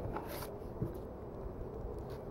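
Faint scraping of a putty knife spreading and dabbing wet joint compound onto an OSB board, with one brief, sharper scrape about half a second in, over a low steady background rumble.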